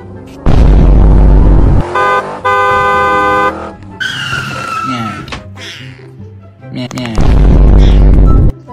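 Edited meme sound effects over background music. A loud booming burst comes about half a second in, then a held car horn honk for about a second in the middle, a short falling tone, and another loud boom near the end.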